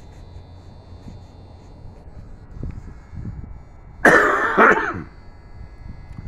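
A person coughs twice, close to the microphone, about four seconds in, over a faint low steady background hum.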